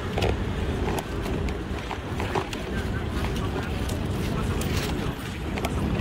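Busy pedestrian street ambience: indistinct chatter of passers-by over a steady low rumble of wind on the microphone.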